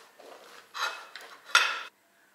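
Knife sawing through a crusty seeded loaf on a plate: two cutting strokes, the second louder and longer, ending suddenly just before the end.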